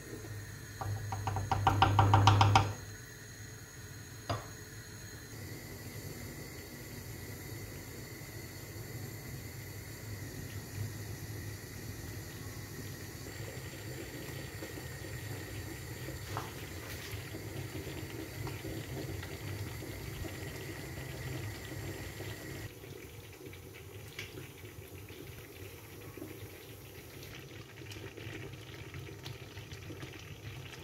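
Pans on the stove: thick plum jam bubbling and a pot of water boiling around glass jars being sterilised. A brief loud, rapid scraping of a wooden spoon stirring the jam comes about two seconds in.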